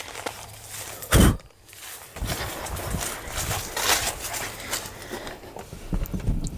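Handling noise and footsteps with one loud thump about a second in, then a few seconds of irregular rustling and scuffing as a small dog is set onto a pickup truck's cloth bench seat.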